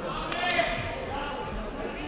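Reverberant sports-hall ambience: several distant voices talking across the hall, with one short, sharp impact about a third of a second in.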